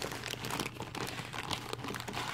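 Clear plastic bag crinkling as it is handled and its contents are shifted about, in quick irregular crackles.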